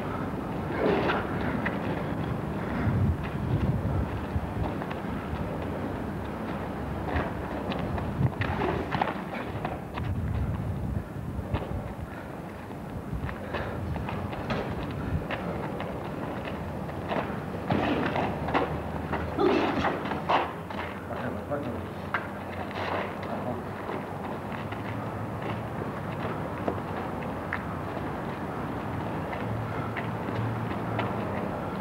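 Boxing gloves landing during sparring: scattered thuds and slaps, some in quick clusters, with indistinct voices and a steady low hum.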